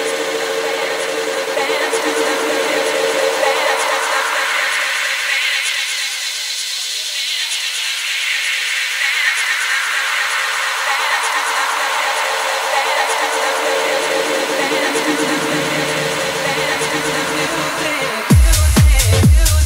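Electronic dance music played by a DJ, in a build-up with no kick drum: the bass is filtered out, leaving a held tone and a hissing, whooshing texture whose brightness sweeps up and then back down in the middle. The low end creeps back in near the end, just before the full beat drops.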